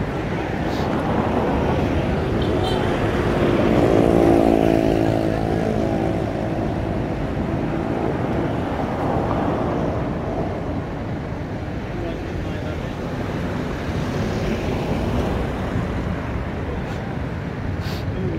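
Street traffic noise, steady and low, with a vehicle engine passing close and loudest about four seconds in.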